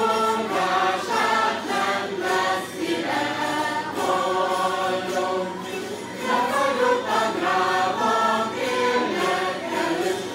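Mixed choir of women's and men's voices singing a Hungarian folk song from the Ormánság region, in sung phrases a few seconds long.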